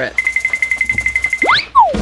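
Edited-in cartoon sound effect: a rapid run of short, high electronic beeps, about ten a second, then a quick rising whistle and a falling one near the end.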